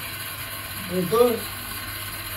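A steady mechanical rattling noise runs underneath throughout. A man's voice speaks briefly about a second in.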